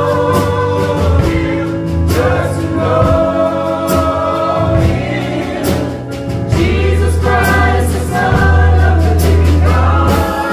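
Small gospel choir of mixed voices singing together into microphones, over held low bass notes and regular percussive hits.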